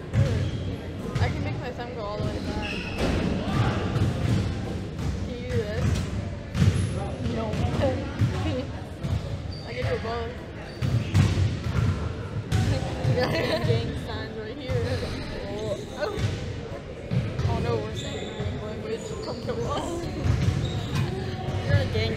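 Basketballs bouncing in a gym, repeated irregular thuds, with voices talking over them.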